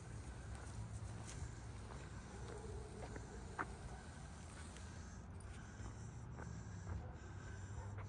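Faint outdoor background noise: a steady low rumble with a few soft, scattered taps, consistent with someone walking on pavement while holding the recording device.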